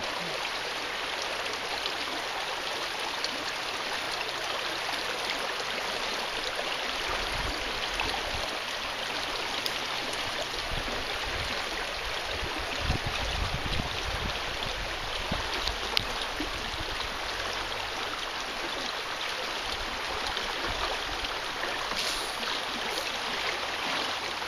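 Shallow river water running steadily over stony shallows, an even rushing sound.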